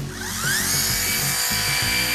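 Philips Satinelle cordless epilator, fitted with its razor head, switched on: its small motor spins up with a rising whine over the first second, then runs at a steady high-pitched buzz.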